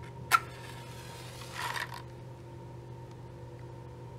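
A sharp click, then about a second and a half later a short rasp as a wooden match is struck and flares, over a steady low hum.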